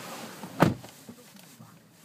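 Quiet room tone inside a parked car, broken by a single short, sharp click a little over half a second in.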